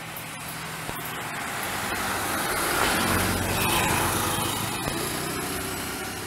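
A motor vehicle passing on the road: engine hum and tyre noise swell to their loudest about halfway through, then fade away.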